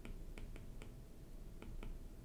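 A pen tip ticking and tapping on a writing surface while a short word and an arrow are written by hand: about six faint, short clicks at uneven intervals.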